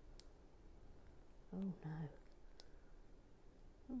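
A few faint, sharp clicks of hard plastic: a Brickier (non-Lego) minifigure arm being pushed and worked against its torso socket without going in.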